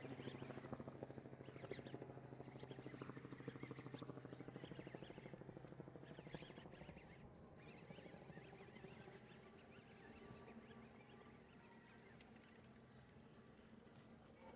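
Faint, fast ticking of a fishing reel being cranked against a hooked fish, over a low steady hum. The ticking is strongest in the first half and fades toward the end.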